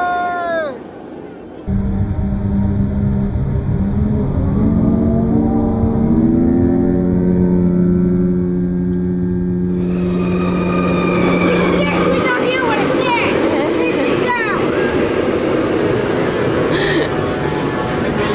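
TRON Lightcycle Run roller coaster: a stepped, rising whine as a train launches and speeds past, then the rush of the train on the track with riders yelling.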